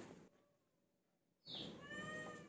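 A cat's short, faint meow near the end, just after a brief high squeak; otherwise near silence.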